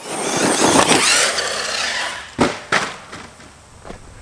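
Arrma Kraton 6S brushless electric RC monster truck driving hard over loose dirt: a motor whine rising and falling over the rough noise of tires throwing dirt, then two sharp knocks about a third of a second apart, a little over two seconds in, before the noise dies away.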